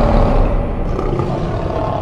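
A lion's roar sound effect in a logo sting, loud and slowly dying away.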